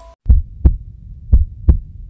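Heartbeat sound effect: low double thumps, lub-dub, two pairs about a second apart.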